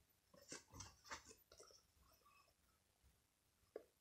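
Near silence, broken by a few faint short sniffs and soft handling of a foam squishy toy held to the nose in the first two seconds, and a faint click just before the end.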